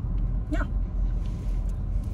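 Car cabin on the move: a steady low rumble of engine and road noise.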